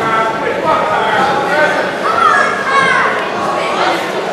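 Ringside voices shouting and calling out high-pitched encouragement to the boxers, several at once, loudest about two seconds in.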